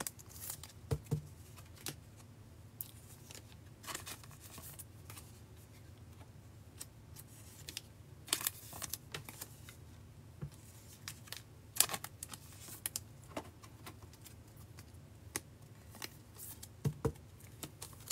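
Trading cards being handled: scattered short scrapes and light clicks as cards are flipped through and slid into a rigid plastic toploader.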